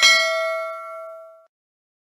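Notification-bell chime sound effect of a subscribe-button animation: a single bright ding that rings out and fades away over about a second and a half.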